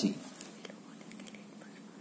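Quiet room tone with a low hum and a few faint light ticks between about half a second and a second in.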